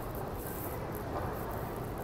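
Steady background hum and hiss of an airport terminal, with no distinct event standing out.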